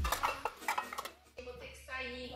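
A dark-coated metal pan set into a dish-drying rack, clattering and clinking against the dishes and cutlery there in a quick series of knocks over the first second or so.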